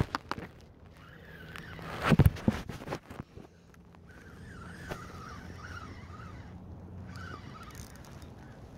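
Spinning reel being cranked against a hooked smallmouth bass, its whir rising and falling, over a steady low hum, with a few knocks and clicks from handling in the boat.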